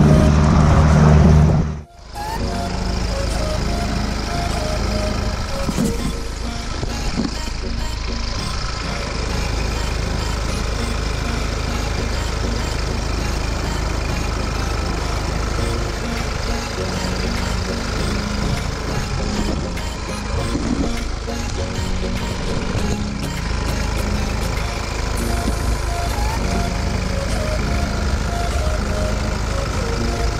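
Music for the first two seconds, cut off abruptly. Then a jeep's engine running steadily at idle under the open bonnet while water is poured from a plastic bottle into the radiator, with faint voices behind it.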